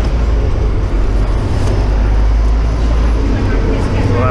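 Steady low rumble of city street traffic, with a double-decker bus's diesel engine running close by.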